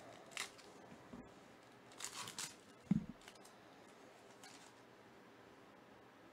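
Foil trading-card pack being torn open and crinkled, in short crackly bursts about half a second and two seconds in. A dull thump comes just under three seconds in, followed by a faint rustle of cards.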